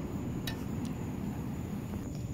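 Steady low rumble of outdoor background noise, with one sharp click about half a second in and a fainter one just after.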